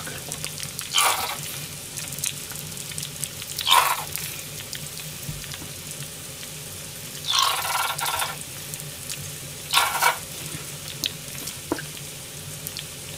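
Okonomiyaki frying in a hot iron pan, a steady sizzle. Four short, louder spurts come as sauce is squeezed from a plastic squeeze bottle onto the hot surface.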